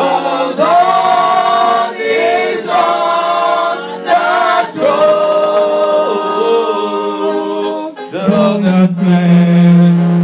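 A group of voices singing unaccompanied, a slow worship song in long held notes, phrase after phrase with short breaths between, with a low voice holding a strong note near the end.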